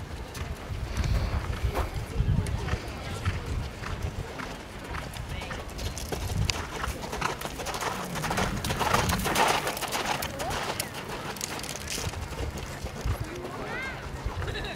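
Horse cantering on a sand arena, its hoofbeats thudding, with background voices.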